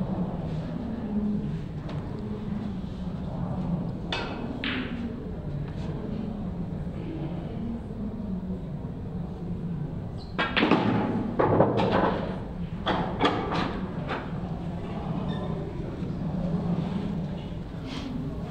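English pool balls being struck with a cue, clicking together and dropping into pockets: a couple of sharp knocks about four seconds in, then a busier run of knocks and rattles about ten to fourteen seconds in, over a steady low hum.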